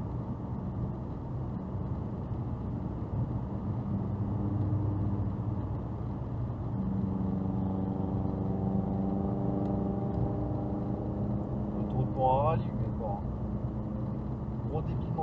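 Steady road and engine noise heard inside a car cruising on a motorway at about 105 km/h, with a steady droning hum from about halfway through. A voice is heard briefly near the end.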